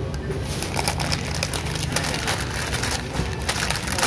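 Plastic anti-static bag crackling and crinkling in quick irregular clicks as a graphics card wrapped in it is handled and lifted out of its foam box insert.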